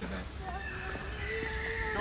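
A faint, drawn-out voice, with light footsteps on pavement.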